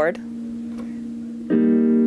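Korg X50 synthesizer keyboard playing a piano sound: a held note sustains and slowly fades, then a fuller chord is struck about one and a half seconds in and rings on.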